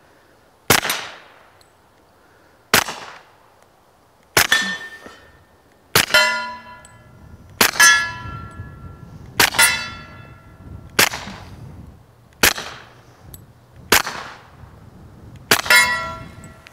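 S&W M&P45 pistol fitted with an AAC Tirant 45 suppressor, firing 230-grain .45 ACP. It is fired ten times at a slow, steady pace, about one shot every second and a half, each shot a short sharp crack. Several hits ring on steel targets, a lingering metallic clang.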